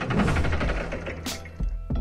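Short music sting for an animated title card: a swoosh, a rapid run of ticks that fades away, a sharp hit a little past halfway, and a low bass note near the end.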